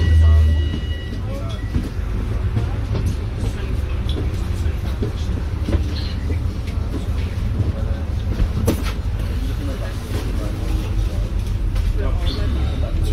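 A Volvo B5LH diesel-electric hybrid double-decker bus on the move, heard from inside on the upper deck: a steady low drivetrain and road rumble with scattered rattles and knocks from the body. The rumble is louder in the first second, together with a brief high steady whine.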